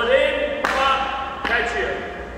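Hockey stick blade hitting a puck on the ice twice, sharp clacks about half a second in and again nearly a second later: the pull across the body and the pop back off the heel of the stick.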